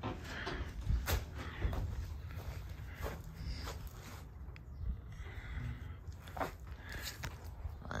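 Scattered knocks and clicks as a horse trailer's wood-clad rear door is swung open and held against its hinges, over a steady low rumble.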